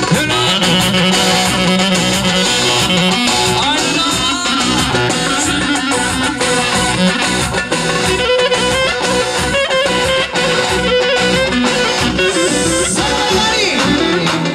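Live, amplified dance music with a clarinet playing the lead melody over a band with a steady beat.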